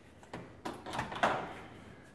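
Whirlpool microwave's door-release button pressed hard, with a few sharp clicks as the latch lets go and the door swings open.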